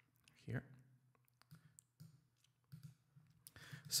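Faint computer mouse clicks, several scattered over about two seconds, over a low steady electrical hum.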